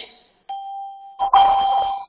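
A steady electronic tone held at one pitch, starting about half a second in. It grows louder with a rush of noise about a second later, then cuts off abruptly.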